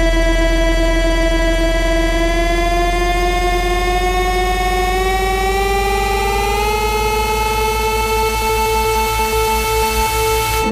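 A loud, sustained electronic drone over a heavy low buzz. Its pitch glides slowly upward for about seven seconds, then holds steady.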